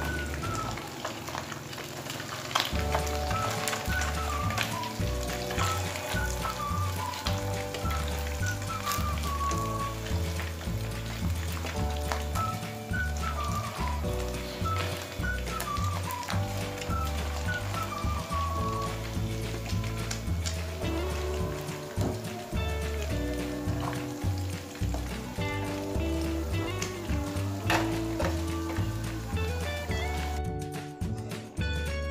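Background music with a steady beat over catfish pieces sizzling in hot oil in a wok as they are turned with a wooden spatula, with scattered small ticks.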